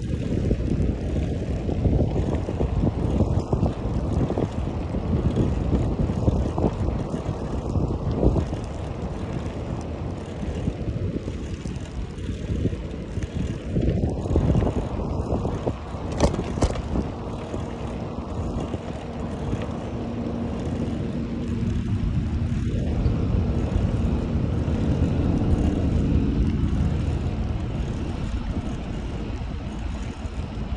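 Wind buffeting the microphone of a moving bicycle: a loud, low rumble that swells and eases as the rider goes. A sharp click comes about midway, and a faint steady hum runs through much of the second half.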